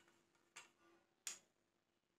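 Near silence: faint room tone with two short, faint clicks, one about half a second in and a louder one a little over a second in.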